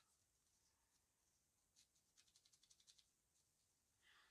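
Near silence, with a faint, quick run of short scratchy rubs about two seconds in, roughly eight a second for about a second: a paper towel being scrubbed over a small blackened brass photoetch part to remove the crust.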